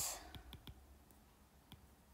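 A stylus tip tapping and clicking on a tablet's glass screen while a word is handwritten: a few faint, irregular clicks.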